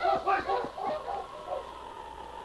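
A team of sled dogs yapping and barking in quick, excited bursts as it sets off, fading away over about a second and a half. A faint steady tone is held underneath.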